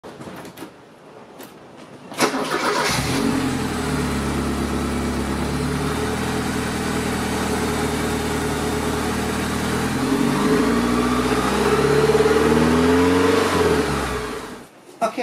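A few faint clicks, then the 1983 Porsche 944's four-cylinder engine cranks briefly, starts and settles into an idle. From about ten seconds in it is revved, its pitch climbing.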